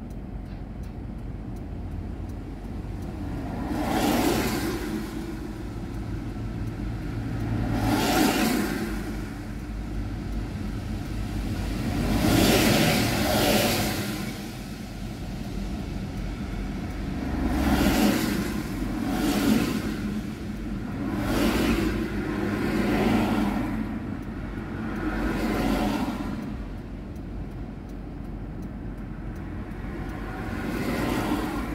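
Road traffic: cars passing one after another, about eight pass-bys, each swelling and fading over a second or two, over a steady low background rumble.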